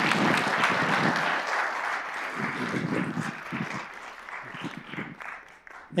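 Audience applauding, strongest in the first two seconds and dying away over the next few.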